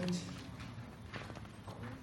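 Footsteps of shoes on a hard floor: a few separate clicks as a person walks, over a faint steady low hum.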